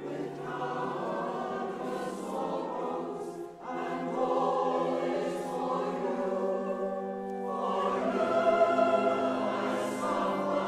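Large mixed SATB choir singing sustained chords, with a brief break about three and a half seconds in, then swelling louder near the end.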